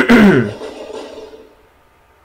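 A man clears his throat once, a sharp rasp followed by a short hum that falls in pitch.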